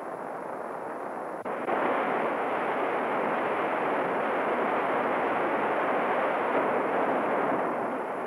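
A large waterfall's falling water: a steady rushing noise that steps up in loudness about a second and a half in.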